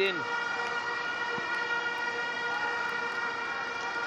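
A steady, unchanging pitched drone with several tones stacked above it, holding one pitch throughout.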